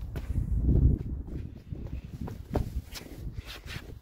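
Footsteps and handling noise on a hand-held microphone, over a low rumble, with a few faint ticks.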